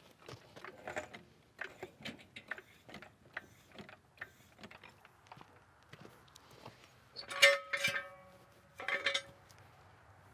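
Steel jack stands being pulled from under the truck and set down: two loud, sharp metal clanks with a ringing tone, about two-thirds of the way in and again a second or so later. Before them there are faint scattered clicks and footsteps.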